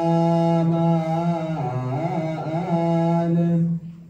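Male voices chanting an Ethiopian Orthodox mezmur (hymn) in unison. They hold long steady notes with a short ornamented run in the middle, then pause briefly for breath near the end.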